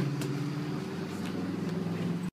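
Steady low mechanical hum, like an engine or motor running at idle.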